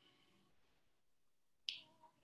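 Near silence, broken by one short sharp click near the end.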